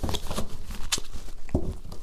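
A deck of tarot cards being shuffled by hand: a soft rustle of cards with a few sharp clicks.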